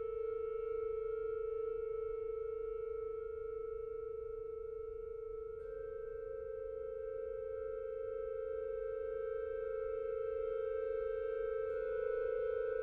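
Pipe organ holding a soft, sustained chord. A new note enters about halfway through and the chord shifts again near the end, as the chord is built up very slowly.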